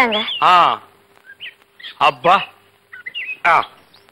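Brief vocal exclamations, with faint birds chirping in the background between them.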